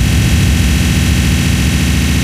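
Hardcore techno track: a steady wall of distorted, hissing synthesizer noise over a low drone, with no kick drum in this stretch.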